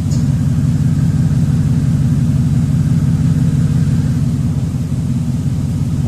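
Ford 5.4 Triton V8 engine of a 2004 F150 idling steadily with a low, even rumble.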